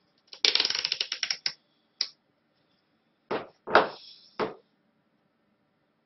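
Small hard objects handled on a workbench: a quick run of clicks and rattles lasting about a second, a single click, then three knocks close together about half a second apart.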